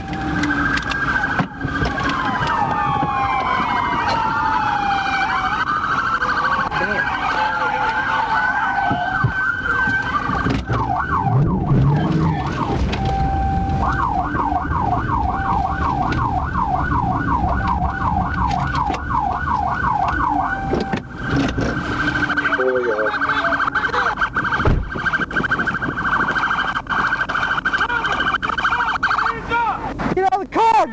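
Police car electronic sirens. A rapid yelp runs for much of the time, with slower wailing sirens from other units overlapping it for several seconds near the start, over the rumble of the cruiser's engine and tyres.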